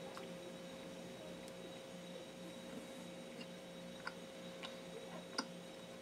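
Quiet, closed-mouth biting and chewing of a cheeseburger, heard as a few soft clicks in the second half over a steady faint hum.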